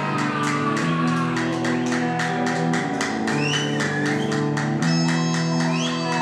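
Live heavy metal band playing loud distorted electric guitars over drums. The drums hit fast and evenly under sustained low guitar chords, and a few short rising high notes come in the second half.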